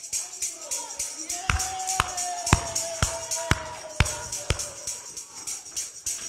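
A tambourine jingles steadily and is struck hard about twice a second for several beats. Over it a woman's voice holds one long gospel note that sags slightly in pitch.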